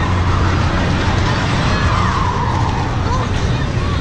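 Fairground midway noise: a steady low machine hum under scattered voices of people nearby.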